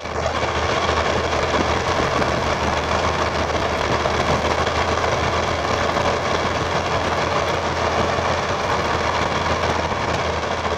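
1996 Chevy K1500's 6.5-litre turbo diesel V8 pulling under load up a long steep grade through a straight exhaust: a steady low rumble mixed with wind and tyre noise on the outside-mounted mic.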